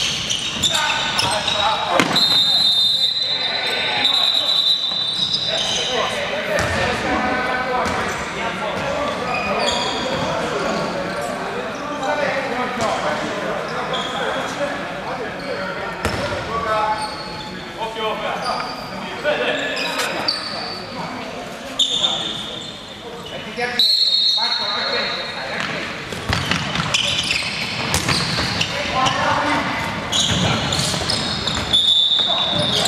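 Handball game sounds echoing in a large sports hall: the ball bouncing and slapping on the wooden court, with scattered knocks and players' voices calling out.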